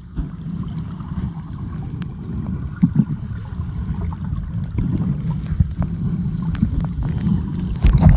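Muffled sound from a camera held underwater in shallow sea water: a steady low rumble of moving water with scattered small clicks and knocks.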